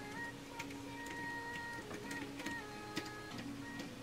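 Computer keyboard being typed on: irregular light key clicks, several a second, over soft background music with a slow melody.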